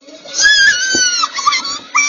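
A very high-pitched, squeaky pitch-shifted voice, cartoon-chipmunk style, with gliding squeals that slide down and back up in pitch.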